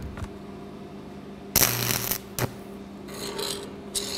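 Stick-welding arc from an E6013 electrode crackling for well under a second as a quick tack weld is struck on steel plate, with a short sharp pop just after it ends. A steady hum runs underneath.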